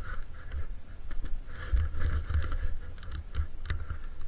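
Skis moving through untracked snow: irregular crunching and clicking, with wind rumbling on the camera's microphone.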